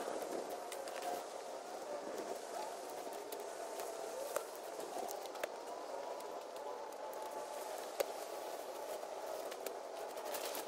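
Faint steady outdoor background with a few short knocks, the loudest about eight seconds in, as clumps of weeds and rotten wood are tossed onto a bed of logs and dry grass.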